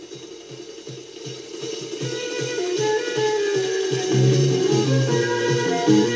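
Opening of a 1970 Belgian psychedelic rock recording, growing louder: a flurry of cymbals and hi-hat over a fast, even beat. A flute brings in a distinct melodic line about two seconds in, and the bass joins with a circular line about four seconds in.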